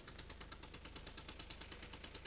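Faint low hum with a fast, even ticking running through it, and no voice.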